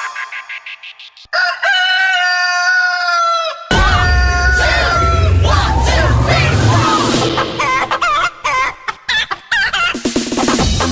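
Electronic dance track built from chicken sounds: fading echoing ticks for about a second, then a long rooster crow held for about two seconds, after which the bass beat drops back in with chopped clucking samples over it.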